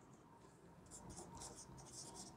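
Faint strokes of a marker pen writing on a whiteboard: a run of short, high scratchy strokes starting about a second in.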